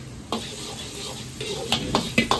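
Diced onion sizzling in oil in a carbon-steel wok over a gas flame, the sizzle swelling after a knock about a third of a second in. Sharp clacks of the ladle against the wok come near the end.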